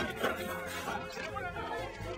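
A single sharp slap of a heap of paper file folders being flung, right at the start, followed by indistinct voices chattering.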